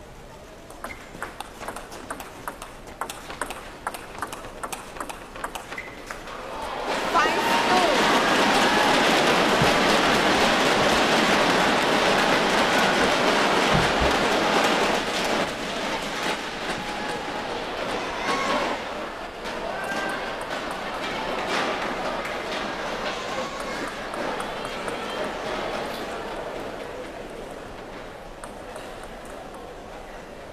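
Table tennis rally: sharp clicks of the celluloid ball off bats and table, a few a second. About seven seconds in, as the point ends, the crowd breaks into loud cheering and applause with shouts in it, easing after several seconds and dying away near the end.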